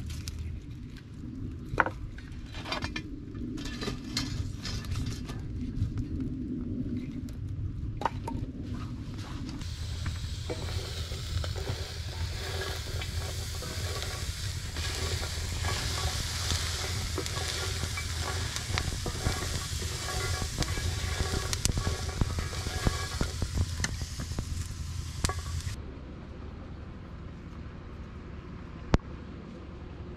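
Acorns roasting in a pan over a wood fire, sizzling and rattling as they are stirred with a wooden spatula, with scattered clicks and crackles. The sizzle grows dense and loud about a third of the way in and drops away suddenly a few seconds before the end.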